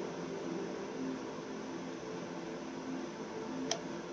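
Steady quiet room hum with faint sustained tones, and a single short click near the end.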